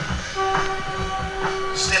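Hip hop record intro: a steady horn-like tone holds from about half a second in for roughly a second and a half over a low, rhythmic rumble. A man's voice comes in at the end.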